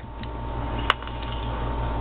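A steady low background hum, with one sharp click a little before one second in.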